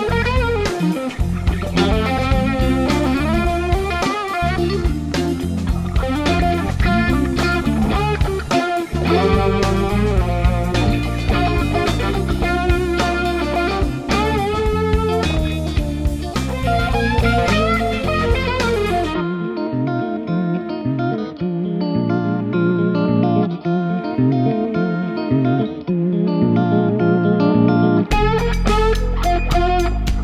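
Electric guitar played through a Black Cat Vibe pedal, a Uni-Vibe-style analog modulation effect, in a continuous bluesy passage. About two-thirds of the way through, the deep bass and the brightest treble drop away for around nine seconds, leaving a thinner sound, before the full, deeper sound returns near the end.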